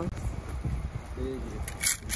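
Low background rumble with a short hum of a voice a little past a second in, and a brief rustling burst near the end.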